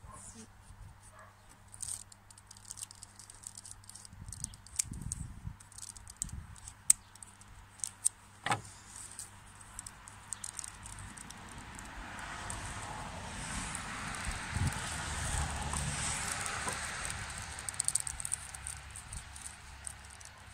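Small scissors snipping and hands handling a birch bark knife sheath: scattered light clicks and snips. Then a steady rustling scrape lasting several seconds as the bark is worked, likely a knife pushed into the tight-fitting sheath.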